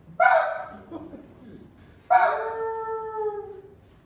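Two loud shouted calls from a man's voice: a short shout near the start, then a long drawn-out cry held for about a second and a half, sinking slightly in pitch at the end.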